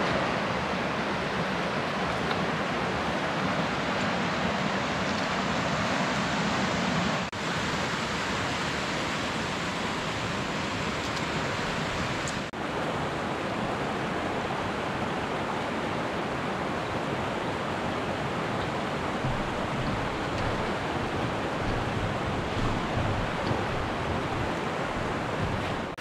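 Mountain river (Río Casaño) rushing over rocks, a steady loud rush of water that dips briefly twice, about seven and twelve seconds in.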